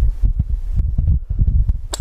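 Wind buffeting the microphone: a low, irregular rumble.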